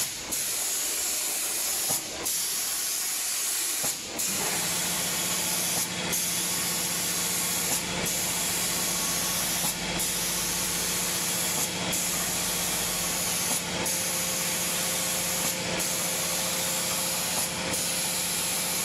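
Automatic paint spraying machine's air-atomising spray gun hissing steadily, breaking off briefly about every two seconds. A low steady hum from the machine joins about four seconds in.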